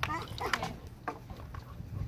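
A small dog whimpering faintly, under quiet background talk.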